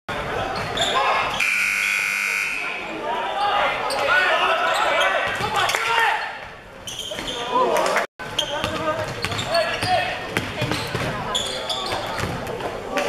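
Basketball game in a gym hall: a ball bouncing on the hardwood floor and players' voices calling out. A game buzzer sounds once for about a second and a half near the start.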